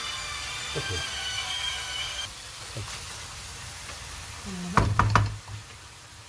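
Chicken pieces sizzling in an aluminium pan as they are stirred with a wooden spoon, with a steady high tone over the first two seconds that cuts off suddenly. About five seconds in, three sharp knocks: the wooden spoon tapped on the pan.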